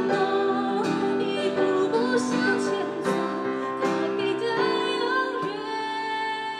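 Live female vocal singing a pop ballad, accompanied by acoustic guitar and keyboard, with a long held note beginning about five and a half seconds in.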